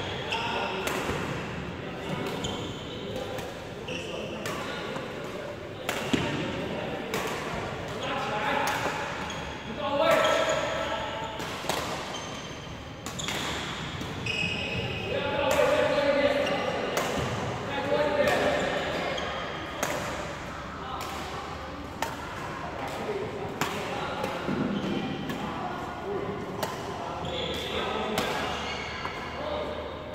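Badminton rackets striking shuttlecocks: sharp, irregular hits from several courts, echoing in a large hall, with people's voices in the background.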